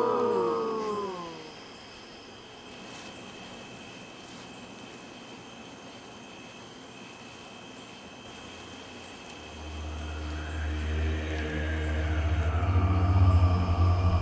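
A warbling, wavering tone that fades out in the first second and a half. Then a quiet stretch with a faint steady high whine, and a deep rumbling drone that swells in about ten seconds in and keeps getting louder.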